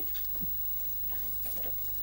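Faint steady low hum and hiss of background noise, with no distinct sound event.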